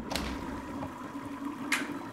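Toilet flushing, with water rushing and a steady hiss of the tank refilling, and a sharp click near the end as the stall door's latch is opened.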